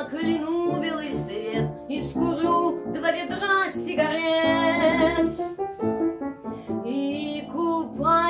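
A woman singing a Russian-language song in phrases, accompanied on the piano.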